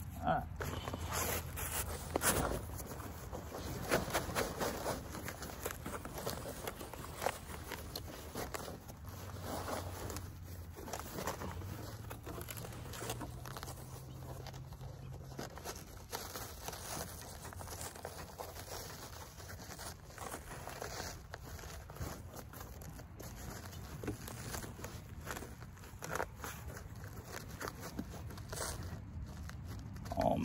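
Handling noise from a nylon plate carrier as armor plates are fitted into it and it is pulled tight: rustling fabric, Velcro tearing open and shut, and irregular knocks and scrapes.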